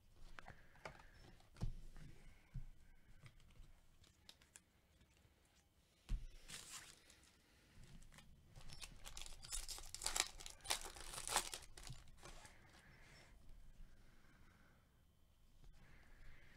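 Faint handling of Bowman baseball card packs. A soft thump comes about six seconds in, then a foil pack wrapper is torn open and crinkled for a couple of seconds, with light clicks of cards being handled around it.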